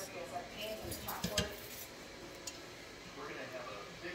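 A couple of light clinks of a utensil against a cooking pot, about a second in, over low kitchen handling noise.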